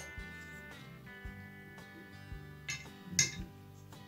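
Quiet background guitar music with held notes, broken by a few light clicks and knocks from handling a plastic clothespin and steel nail against a glass jar.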